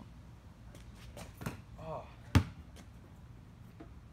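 Basketball being handled while it is spun on a fingertip: a few light taps, then one sharp, loud thump a little past the middle. A short vocal sound comes just before the thump.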